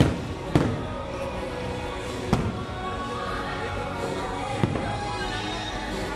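Fireworks bursting: four sharp bangs, the loudest right at the start, the others about half a second in, at about two and a half seconds and near five seconds. Music plays steadily throughout.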